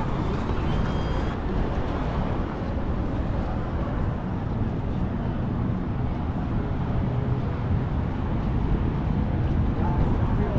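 Steady low rumble of background noise with faint, indistinct voices.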